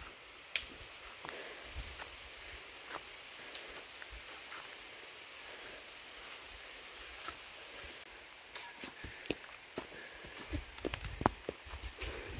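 Faint footsteps scuffing and crunching on a stony dirt trail, irregular, growing more frequent and a little louder in the last few seconds, over a soft steady outdoor hiss.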